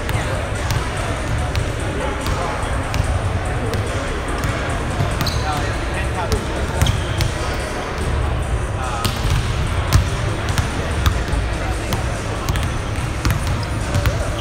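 Basketballs bouncing on a hardwood gym floor, with many short sharp thuds at irregular intervals, over indistinct background voices and the low, steady hum of a large hall.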